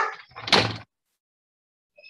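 A short bump in two quick bursts within the first second, the second louder and about half a second long.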